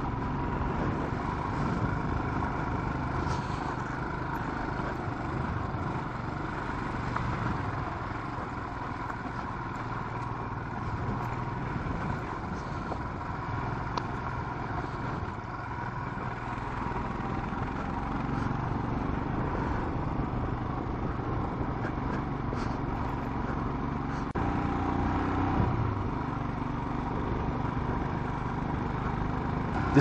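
Royal Enfield Himalayan's single-cylinder engine running steadily while riding, heard from on the bike with an even rush of wind and road noise.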